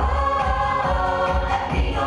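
Musical-theatre chorus number: a group of voices singing together over backing music, with a bass pulsing about twice a second.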